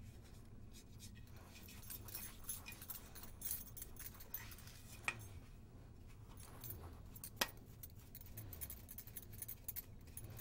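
Faint, uneven rustle of a soft makeup brush sweeping loose silver leaf off a lamp base, with handling noise from the lamp and two sharp clicks about five and seven and a half seconds in.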